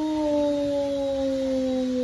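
A person's long, held wordless vocal sound: one unbroken note that slides slowly lower and lasts about three seconds.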